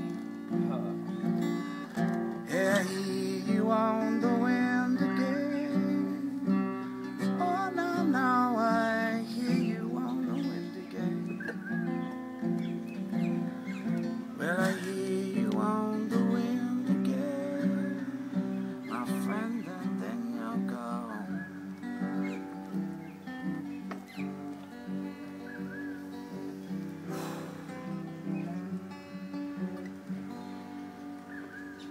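Acoustic guitar played alone, chords ringing on steadily, the playing growing quieter in the last third.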